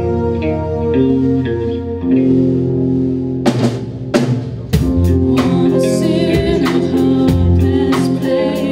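Symphonic metal band playing a ballad live: held keyboard chords at first, then drum and cymbal hits come in about three and a half seconds in, and the full band with a steady drum beat from about five seconds.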